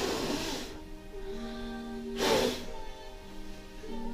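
Background music with steady held notes, over which a person gives two short, hissing puffs of breath, one at the start and one about two seconds later.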